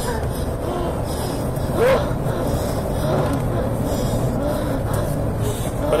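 Road and engine noise inside a moving patrol car's cabin, a steady low rumble. A brief vocal sound comes about two seconds in.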